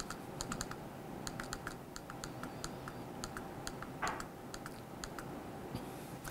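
Faint, quick, irregular clicks of typing on a computer keyboard, with a brief soft rustle about four seconds in.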